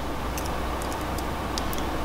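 A few faint clicks of small jewelry pliers on steel paperclip wire as it is bent into a heart shape, over a steady low hum.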